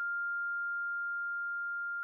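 A single steady high-pitched ringing tone: a film's ear-ringing sound effect after an explosion, standing for the deafened survivor's tinnitus.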